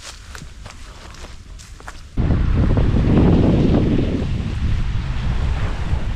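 Wind buffeting the microphone, a loud low rumble that starts abruptly about two seconds in and continues; before it, only a few faint clicks.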